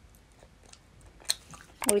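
Faint mouth sounds of chewing a soft chewable diet jelly, with small scattered clicks and one sharper click about two-thirds of the way through.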